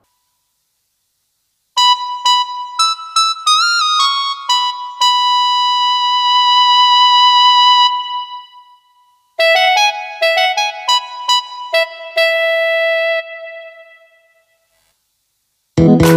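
Electronic arranger keyboard playing a solo lead melody in two short phrases, the lead line of the song's intro picked out on its own. The first phrase has a quick pitch bend and ends on a long held note; the second trails off, and a full backing arrangement comes in right at the end.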